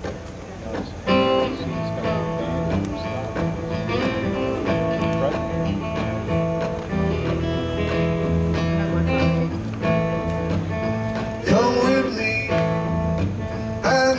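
Acoustic guitar and electric guitar playing a blues-style song intro together, starting about a second in over a steady, repeating bass line. Near the end a few notes glide upward.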